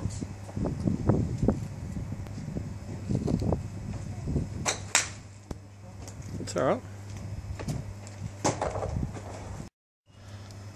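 A golf club striking a ball off a driving-range mat: one sharp crack about five seconds in, with a few fainter clicks around it.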